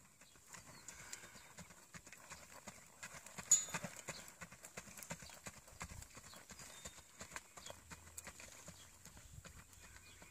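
Hoofbeats of a Rocky Mountain Horse mare under saddle, moving at a steady gait over a dirt track, with one sharper, louder knock about three and a half seconds in.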